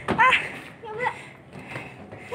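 Brief snatches of a person's voice, two short utterances, with a sharp knock right at the start.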